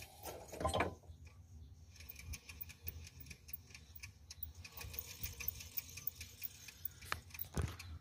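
Air-cooled VW Beetle alternator and its cooling fan turned by hand off the belt, giving a rapid, uneven ticking and clicking, with a louder knock about a second in and another near the end. The ticking comes from the alternator's worn-out rear bearing.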